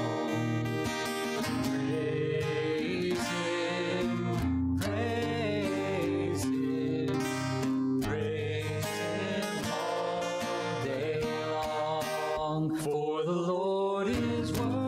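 Congregational singing of a psalm-based worship song, led by a man's voice at a microphone and accompanied by acoustic guitar.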